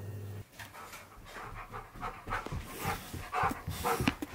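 A husky panting in quick, rhythmic breaths, about three a second, growing louder toward the end. A low steady hum cuts off about half a second in, before the panting begins.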